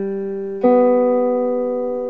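Clean electric guitar playing a major third as two single notes: the lower root is ringing, and about half a second in the higher note, on the next string one fret lower, is plucked and rings on together with it, both slowly fading.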